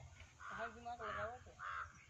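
A crow cawing three times in quick succession, over a low steady rumble.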